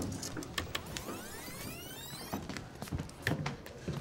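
Buttons clicking on a video playback controller, with a tape machine's motor whining and rising steeply in pitch as it shuttles the tape, then a few heavier low thumps near the end.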